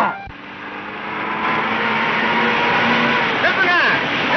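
A Hindustan Ambassador car driving toward the listener: its engine and road noise swell over the first two seconds and then hold steady. A man's voice calls out near the end.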